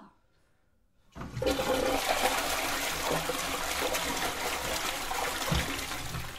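A toilet flushing: after a moment of near silence, the flush starts about a second in and the water runs loud and steady.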